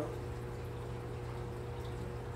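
Room tone: a steady low hum with a faint steady higher tone that fades near the end, and no distinct event.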